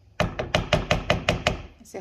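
A cooking spoon knocking rapidly against the pan, about nine sharp knocks in a second and a half.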